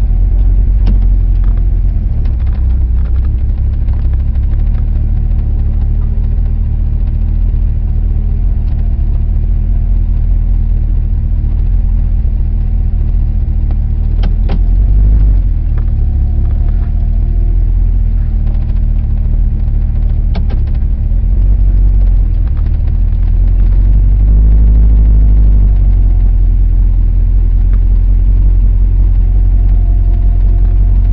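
A vintage car's engine running steadily while the car rolls slowly, heard from on board. It swells briefly about halfway through and again a few seconds later, with a couple of faint clicks along the way.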